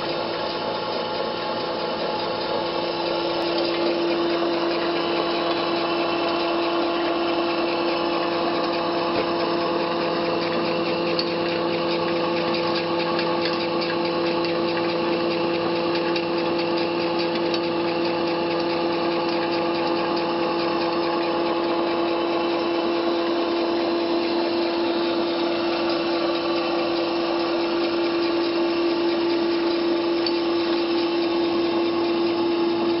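Small electric fish-feed pellet extruder running under load, pressing feed mash into pellets: a steady, constant-pitch motor hum and whine with a grainy grinding rasp over it, getting a little louder a few seconds in.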